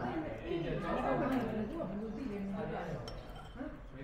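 Voices talking in the background of a small eatery, with a single sharp clink of a metal spoon against a ceramic bowl about three seconds in.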